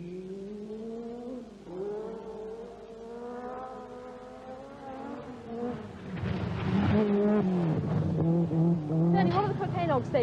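Group B rally car engine at full throttle on a gravel forest stage: the note climbs, drops at a gear change about a second and a half in, then climbs slowly again. About six seconds in the car passes close and gets louder, with a rush of gravel spray, and then holds a steadier note.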